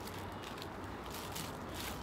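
Faint, steady background noise with no distinct sound event: a lull between the girls' talk.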